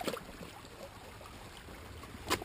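Shallow stream running over stones: a steady, faint rush of water.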